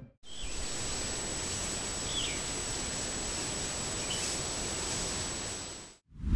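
Steady outdoor field background noise, an even hiss with a thin constant high whine, broken by three faint short chirps about two seconds apart. It fades out just before the end.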